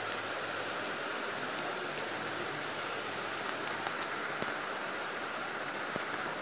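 Steady, even background hiss with a few faint ticks.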